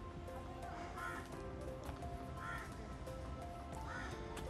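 Crows cawing, about three short caws spaced over a couple of seconds, over soft background music with long held notes.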